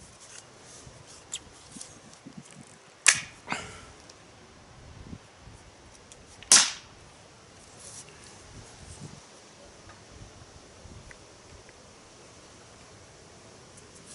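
Sharp clicks from handling a Beeman P17 air pistol: two close together about three seconds in and another about six and a half seconds in, with a few fainter ticks before them.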